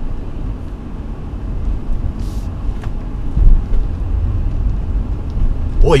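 2016 Honda Pilot AWD in sand mode crawling over a steep, rutted dirt slope with its traction control working: a low, uneven rumble of engine, tyres and suspension heard inside the cabin. A brief hiss comes about two seconds in.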